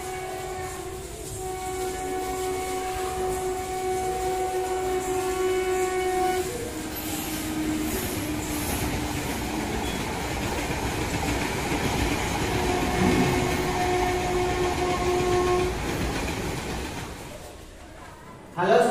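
Train horn sounding a long steady blast, followed by running train rumble and rail clatter, then a second horn blast about twelve seconds in; the sound fades out near the end.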